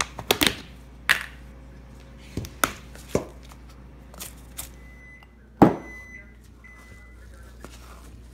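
Plastic lid taken off a cardboard oats canister, then a plastic measuring cup scooping rolled oats: a string of sharp plastic clicks and knocks, the loudest about five and a half seconds in.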